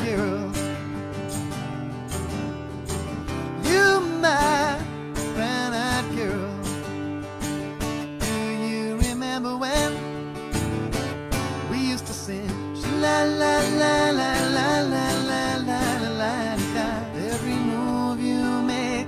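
Strummed acoustic guitar in a country style, with a man's voice singing over it at times.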